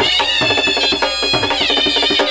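Live South Asian folk music: a high, nasal wind instrument plays a gliding melody over a steady rhythm of hand-struck double-headed drums.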